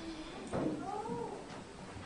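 A short pitched vocal sound about half a second in, rising and then falling in pitch for under a second, over faint room noise.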